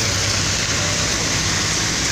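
Diesel engine of a Marcopolo-bodied intercity coach idling at the rear of the bus, a steady low hum under a loud even hiss.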